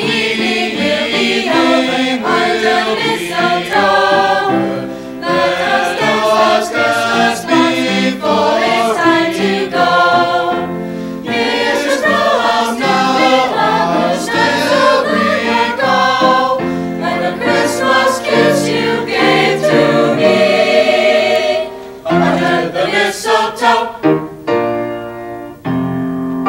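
A mixed choir of young men and women singing with piano accompaniment, held notes giving way to shorter, choppier phrases near the end.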